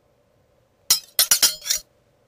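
A quick run of about five sharp, ringing clinks, bunched together in under a second and ending abruptly.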